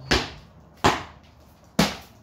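Three sharp, short thuds with a swish, about a second apart, from a kung fu form being performed: feet landing and stepping on concrete and strikes snapping the clothing of a Seven Star Mantis practitioner.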